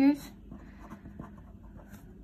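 Faint scratching and light ticking of a felt-tip pen writing on paper.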